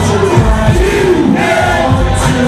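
Loud hip-hop music with a crowd shouting along over it.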